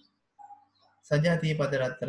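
A man's speaking voice picks up again about a second in, after a short pause. The pause holds only a faint, brief tone.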